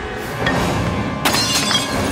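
TV drama soundtrack of a fight scene: tense score under a noisy scuffle, with a sudden crash like something breaking about a second in, followed by ringing debris.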